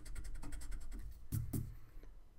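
Pencil eraser rubbed quickly back and forth on drawing paper, taking out a pencil line, in a fast even run of strokes that stops a little over a second in.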